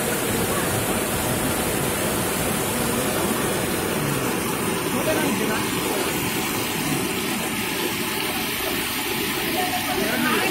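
Muddy floodwater rushing fast down a street, a steady rush of water.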